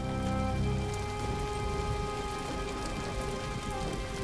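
Steady rain falling, an even hiss with faint drop ticks, under soft held background music whose low notes fade out about a second in.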